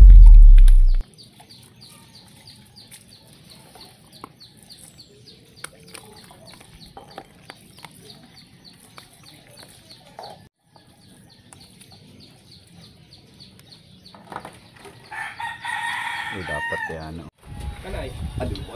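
A loud low boom in the first second, then quiet with faint regular ticking. Near the end a rooster crows once, about two seconds long.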